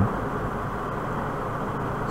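Steady, even background hiss of room tone, with no distinct event.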